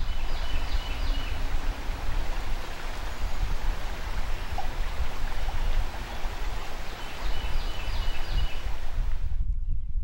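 River water running, a steady rushing noise that fades in at the start and fades out near the end, with a few short high chirps heard twice.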